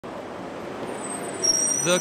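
A city bus passing close by, with engine and tyre noise as a steady road rush. About one and a half seconds in, a high, thin, steady squeal sets in and the sound gets louder as the bus draws level.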